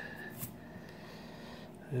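A silver dollar coin being picked up off a scratch-off ticket, with one brief light scrape about half a second in; otherwise quiet room tone.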